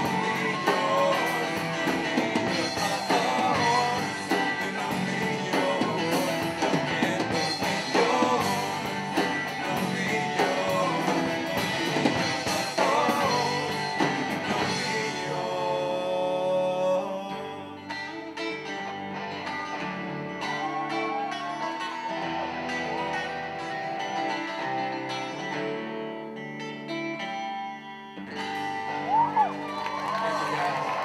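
Live rock band of electric guitars, bass guitar and drum kit playing, with cymbals ringing. About halfway through the drums drop out and the band plays quieter held chords, with a brief louder accent near the end.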